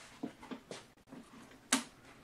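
Handling knocks and clacks from a two-stroke backpack leaf blower worn on the back as the wearer fumbles behind himself for its starter. There are a few light knocks and one sharper clack near the end. The engine does not start.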